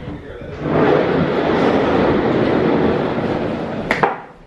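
The casters of a rolling chair rolling across a hard floor. A steady rolling noise starts about half a second in and ends with a knock just before the end.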